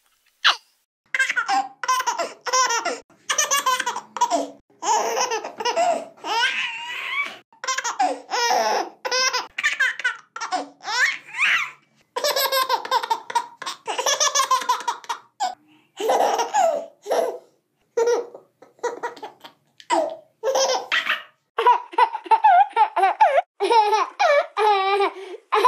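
A baby laughing in repeated high-pitched fits of short bursts, with brief pauses between them.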